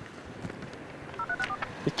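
Phone keypad tones: a quick run of about four short dialing beeps a little past halfway through, over faint street noise.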